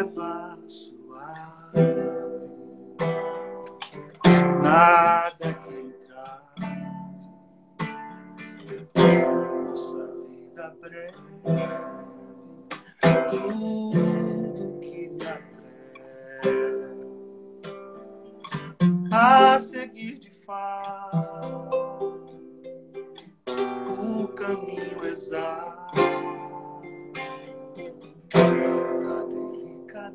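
Man singing a song to his own strummed acoustic guitar, heard over a video-call stream with thin, band-limited audio.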